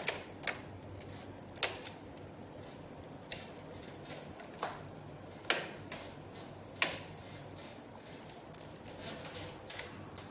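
Plastic louvers of a mini-split air conditioner's indoor unit being snapped back into their clips by hand. There are about seven sharp, separate clicks a second or so apart, then a cluster of softer clicks near the end.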